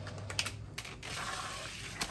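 Steam cleaner's floor head pushed over glazed floor tiles and under a cabinet: a few light clicks and knocks, then a steady hiss for about the last second, over a low steady hum.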